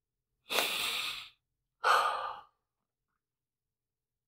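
A man breathing heavily: two breaths, a long exhale about half a second in and a shorter breath near two seconds. He is upset and trying to compose himself.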